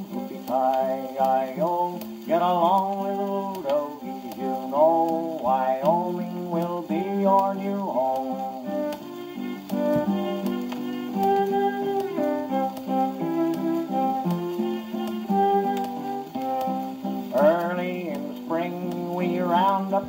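An old cowboy song on a 78 rpm record, played on an acoustic wind-up phonograph: a break between sung verses with guitar accompaniment. Faint record-surface crackle runs under the music.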